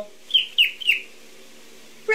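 A cockatiel gives three short chirps in quick succession, each sliding down in pitch, then falls quiet.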